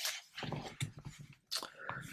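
Paper instruction sheets rustling and flapping as a page of the booklet is turned, in a few short strokes.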